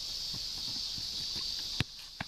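Steady high-pitched drone of insects, with faint light knocks and then a single sharp thud near the end as a football is kicked.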